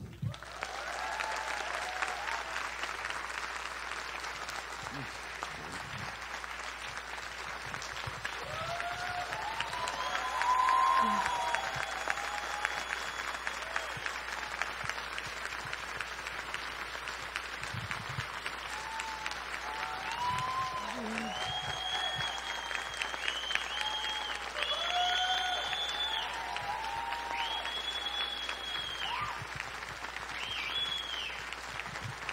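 Sustained applause from a large audience clapping together, with scattered cheering voices rising over the clapping now and then.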